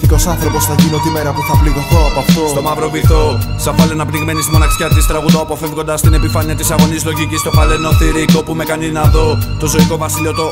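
Hip hop track: a deep kick drum that falls in pitch hits on a steady beat under layered melodic instruments, with rapping in Greek over it.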